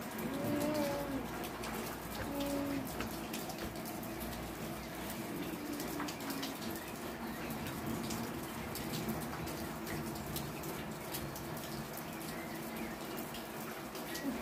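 Steady rain falling, with scattered drops tapping on hard surfaces. A few short low calls come in the first three seconds.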